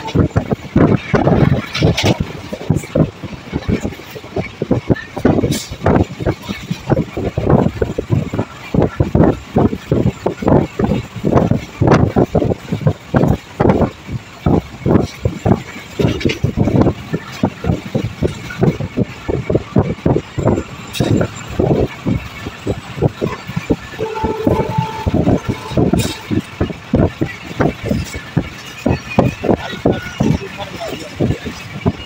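Passenger train coach running at speed, heard from its doorway: wheels clattering rapidly and unevenly over the rail joints over a steady rush of track noise. A short steady tone sounds once, about 24 seconds in.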